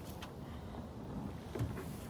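Faint movement sounds of a person climbing out of a car through its open door, with a faint click just after the start and a soft knock about one and a half seconds in, over a low steady background noise.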